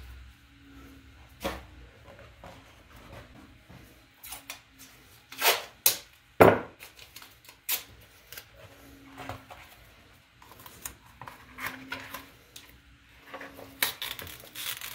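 Handling noises of thin plastic: a disposable glove pulled off, then the crinkle and snap of a sheet of FEP film in its protective plastic covering being worked, with scattered sharp clicks. The loudest two come about five and a half and six and a half seconds in.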